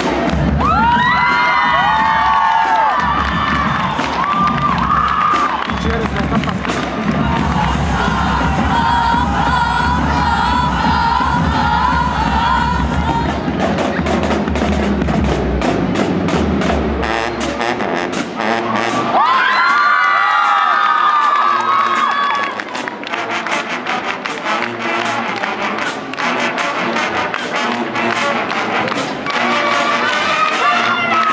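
A school marching band of brass and drums plays loudly to the end of its piece, with the audience shouting over it. The music stops a little past halfway, and the crowd cheers, shouts and applauds.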